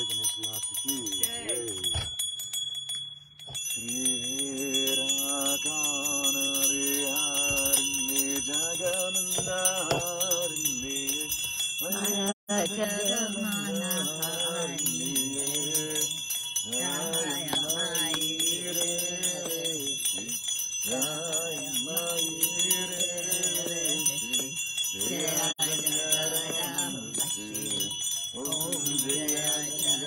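A small hand bell rung continuously, its high ringing steady, under voices chanting in long melodic phrases of a few seconds each.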